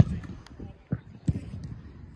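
A football kicked once with a sharp thump, followed by several fainter thuds about half a second and a second later, over background voices.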